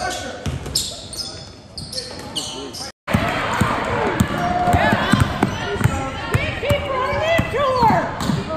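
Basketball game sound in a large gym: a ball being dribbled on a hardwood floor, with sneakers squeaking and voices of players and crowd. The sound cuts out briefly about three seconds in and comes back louder, with frequent short squeaks.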